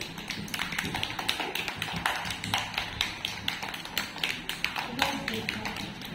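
Several small children clapping their hands, a quick, uneven patter of many claps not in unison.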